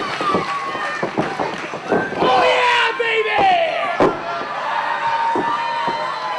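Wrestling crowd in a hall, several voices shouting and yelling over one another, with a sharp thump about four seconds in.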